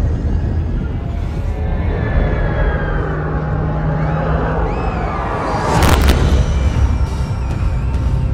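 Dark film-trailer music and sound design: a deep, steady low rumble under sweeping, falling tones, then one loud hit about six seconds in.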